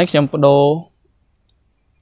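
A voice speaking briefly, then quiet with a single faint click about a second and a half in.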